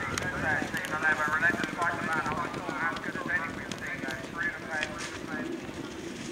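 Horses galloping over turf and jumping brush fences, their hoofbeats sounding as a scattering of irregular thuds, under a voice talking throughout.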